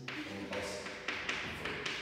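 Chalk tapping and scratching on a chalkboard as numbers and letters are written, in about five short strokes with gaps between them.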